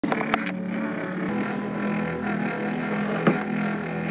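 A steady background hum with several held tones, with a sharp click near the start and a softer tap a little after three seconds.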